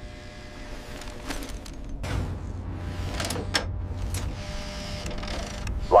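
Motorised cable winch whirring as it reels in a tether line to haul a person up. A low rumble comes in about two seconds in, and there are several short clicks along the way.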